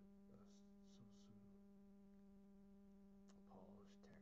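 Near silence: a faint, steady low electrical hum with overtones, and a few faint brief hisses.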